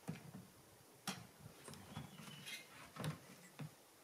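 Faint clicks, knocks and rustling of gear being handled on a kayak, with sharp ticks about a second in and again around three seconds.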